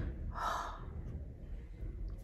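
A woman crying, drawing one short, noisy in-breath about half a second in, then breathing quietly.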